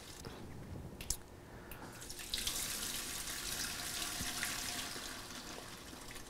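The last of the infused moonshine trickling and dripping faintly from an upturned glass mason jar through a mesh strainer into a stainless steel stockpot, with a single light click about a second in.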